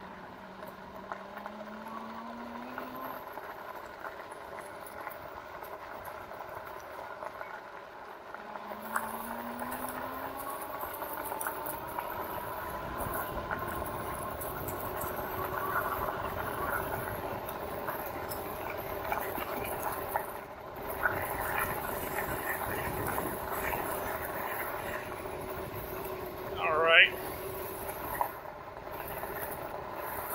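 Electric bike on the move: the RadMini's rear geared hub motor whining under pedal assist, its pitch rising twice as the bike picks up speed, over tyre and wind noise on a dirt trail. About 27 seconds in, a short, sharp rising squeal stands out as the loudest sound.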